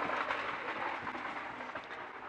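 Rustling handling noise from a hand-held action camera being moved inside a car's back seat, fading gradually.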